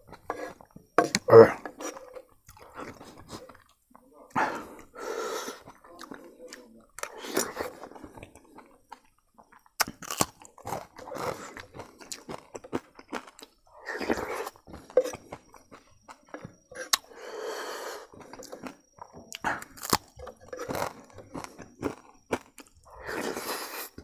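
Close-up eating sounds: dal curry slurped off a metal spoon, and chewing and crunching of fried dried fish, with the spoon clicking and scraping on a wooden plate. Short wet and crunchy bursts come every second or two.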